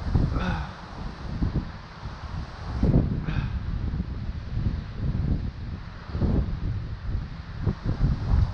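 Wind buffeting the camera microphone: a low noise that swells and fades in gusts.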